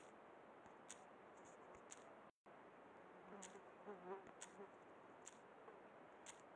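Near silence: faint steady background hiss with scattered faint high ticks, a brief total dropout a little after two seconds in, and a faint muffled low sound in the middle.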